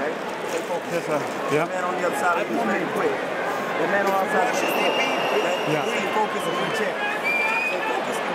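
Several men talking at once close by, cornermen giving a fighter instructions between rounds, over the steady murmur of an arena crowd.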